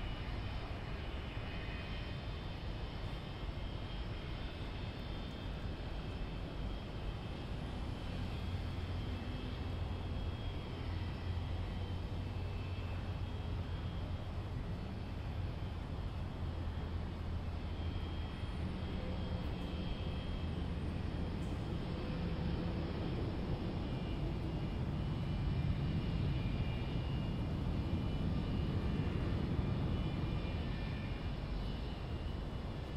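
Jet airliner engines at low taxi thrust: a steady low rumble with faint high-pitched whines, growing a little louder near the end.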